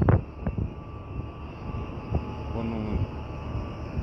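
Steady low machinery drone from the oil-well equipment, with a faint thin whine above it. A few light clicks, and a brief murmur of a voice just before the end.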